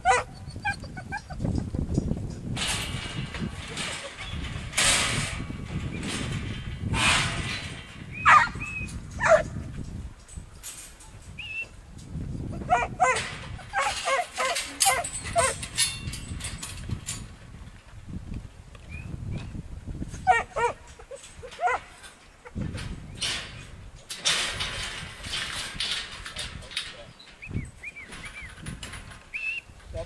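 A 10-month-old black-and-tan kelpie barking in short bursts while working sheep in steel pipe yards. Irregular knocks and noisy rustles run throughout.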